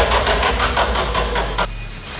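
Game-show prize wheel spinning: a fast run of clicks over a low drone, which cuts off shortly before the end.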